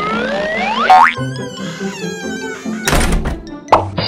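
Cartoon sound effects over children's background music. A rising whistle-like glide and a boing come in the first second, then a wavering warble, with a thunk about three seconds in and another short hit near the end.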